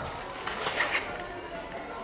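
Indistinct, quiet talking by people in a hall. No music is playing.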